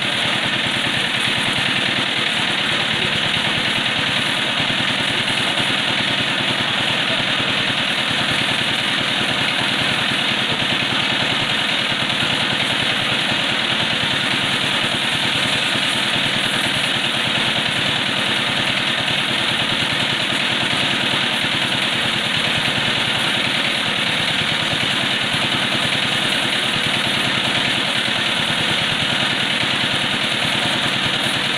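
Motor-driven high-pressure washer pump running steadily with a fast, even pulse, over the hiss of water spraying from its hose.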